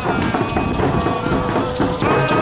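People's voices over a dense low rumble, with one held voice-like note in the second half.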